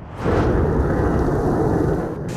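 Jet engine noise from a military jet flying overhead: a loud, steady rumble that sets in about a quarter second in and holds.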